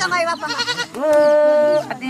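Drawn-out high vocal calls amid a crowd: wavering calls, then one steady held note of almost a second in the middle, the loudest sound.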